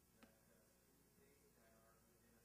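Near silence: faint room tone, with one faint click about a quarter second in.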